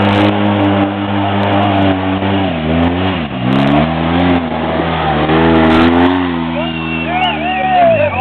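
Side-by-side UTV engine running hard on a dirt trail, its revs dipping and climbing back about three seconds in, then falling away near the end. Voices shout over it near the end.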